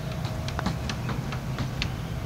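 A golf putt: the light click of a putter striking the ball, among a few other faint, uneven ticks.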